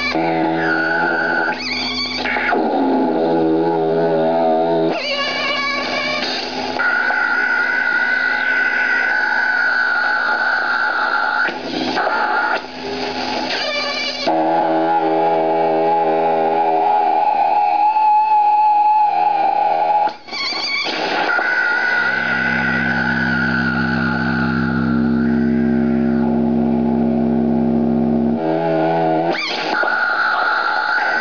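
No-input mixer feedback run through a ring modulator: loud sustained electronic drones and tones that jump abruptly to new pitches and timbres every few seconds as the mixer knobs are turned, some passages warbling quickly up and down. The sound cuts out for an instant about two-thirds of the way through.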